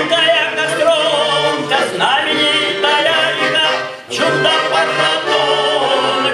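Male vocal trio singing in harmony, the voices held with vibrato, with a brief break between phrases about four seconds in.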